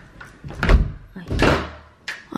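A house door being opened by its knob: a loud thump about two-thirds of a second in, then a second, longer thud at about a second and a half as the door swings open.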